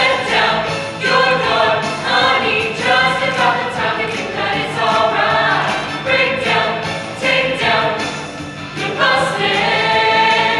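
A show choir of men and women singing together in full voice over instrumental accompaniment, in short sung phrases with repeated sharp accents.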